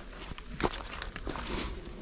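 Footsteps of hikers on a wet, muddy trail strewn with leaves, stones and twigs: a few uneven steps and crunches underfoot, the sharpest a little past half a second in.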